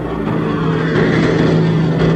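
Cartoon sound effect of a machine motor whirring steadily as a robotic training arm spins its capsule around.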